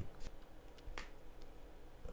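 A few faint, isolated clicks from working a computer's keyboard and mouse, the clearest about halfway through.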